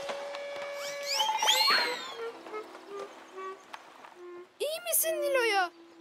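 Cartoon soundtrack: a held note, then quick rising whistle-like glides and a short line of low notes. Near the end, a brief wordless voice sound that rises and falls in pitch.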